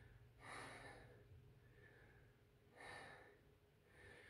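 A woman's faint breathing while she pulses in a wide squat: two soft breaths, one about half a second in and one near three seconds, over near silence.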